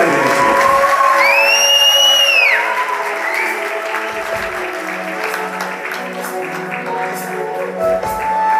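Audience applause over sustained background music, with a high tone about a second in that glides up and falls back down. The clapping dies away by about the middle, leaving soft held music notes.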